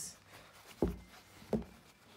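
Handling noise from fabric being worked by hand: two soft bumps about 0.7 s apart, otherwise quiet.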